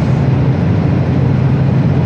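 Steady low drone of a semi-truck's diesel engine and tyres cruising at highway speed, heard from inside the cab.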